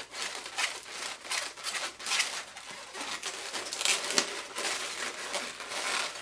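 Latex 260 modelling balloons being twisted and worked by hand: irregular short strokes of latex rubbing on latex and on fingers.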